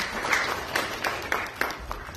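Congregation clapping, the applause thinning to a few scattered claps and fading out near the end.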